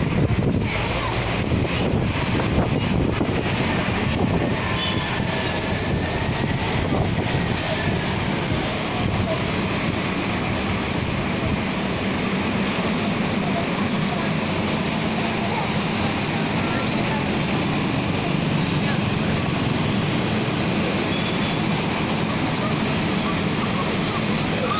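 Steady running noise of an open-top double-decker tour bus on the move, heard from its upper deck: engine and tyre rumble mixed with the surrounding street traffic.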